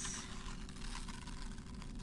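Quiet room tone: a steady low hum under an even hiss, with a brief soft high hiss at the very start.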